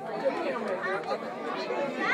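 Chatter of several people talking at once, their voices overlapping.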